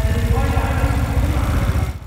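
Sport quad's single-cylinder engine idling, a steady low pulsing running throughout.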